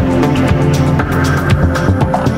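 Deep house music with a steady beat: evenly repeating hi-hat ticks over held bass and synth chords.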